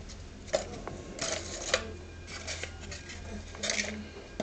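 A cardboard box and a small foam RC plane being handled: rustling of cardboard and foam with a couple of sharp knocks, the loudest about half a second in and just before two seconds.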